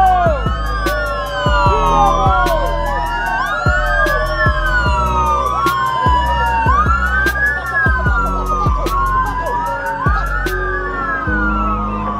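Several motorcade escort sirens sounding at once, each rising and falling in pitch about once a second so that their cycles overlap.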